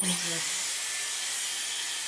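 Dyson Airwrap hot-air styler with a round brush attachment running, blowing air in a steady hiss with a faint high whine.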